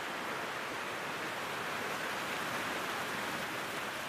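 Spring-fed creek splashing over ice and rock: a steady, even rush of water.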